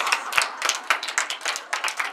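Hand clapping: quick, uneven claps, several a second.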